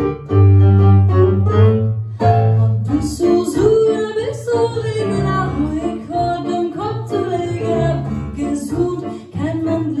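Digital stage piano playing a solo passage with heavy bass notes; about three seconds in, a woman's voice comes in singing a Yiddish song with vibrato over the piano accompaniment.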